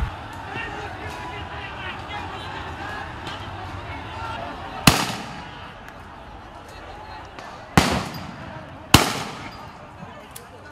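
Three gunshots from police guns firing tear-gas shells or rounds: one about five seconds in, then two close together near the end, each followed by an echo.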